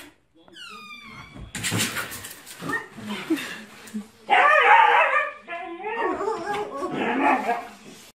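Siberian husky vocalizing in drawn-out, wavering yowls, loudest about four to five seconds in, after a short falling whine near the start.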